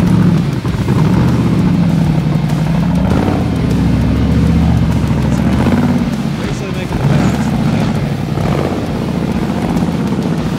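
Rock bouncer race buggy engine running hard under load, revving up and down as it pushes through snow.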